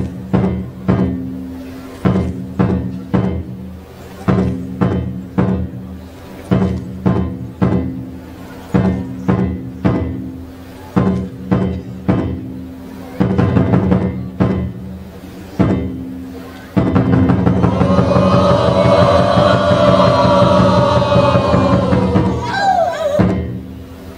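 Traditional Zeliang Naga dance music: a drum struck at a steady beat about twice a second over a low held drone. About three-quarters of the way through, a group of voices comes in singing loudly over the beat.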